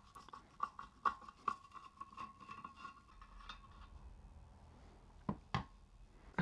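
Screwdriver unscrewing a rusty spoke nipple from a spoked motorcycle rim: small irregular metal clicks and scratching, with a faint steady thin tone under them for the first half, then two sharper clicks near the end as the nipple comes free.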